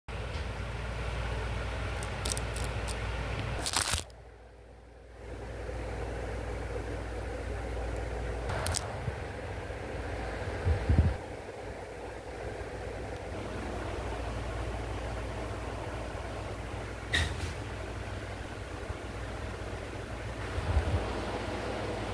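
Steady low background hum, with a few sharp clicks and a heavier knock about halfway through, typical of a phone being handled.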